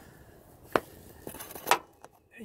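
Two short clicks, a sharp one about a second in and a softer one near the end, over a faint background hiss.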